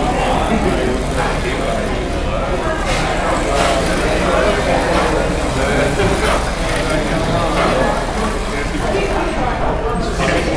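Indistinct chatter of people talking in a large room, over a steady low hum.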